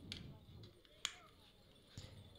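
Very quiet, with one faint sharp click about a second in and a weaker click near the start.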